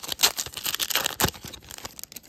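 Foil wrapper of a Panini Prestige football card pack being torn open and crinkled, a dense crackling that thins out near the end.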